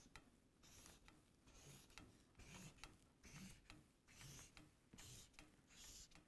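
Faint strokes of a marker drawing short lines on a paper flip-chart pad, one after another about every second.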